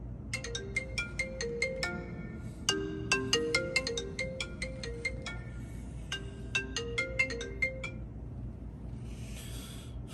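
Smartphone ringtone playing a melody of short, bright plucked notes, repeating, until the call is answered about eight seconds in. A soft rustle follows near the end.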